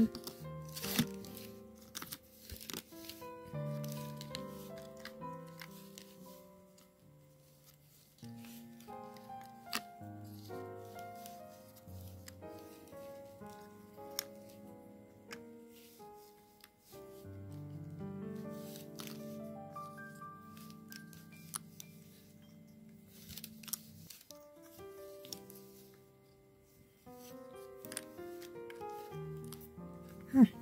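Quiet background music with slow, held notes, over scattered light clicks and taps of small laser-cut wooden embellishment pieces being handled and sorted into counts.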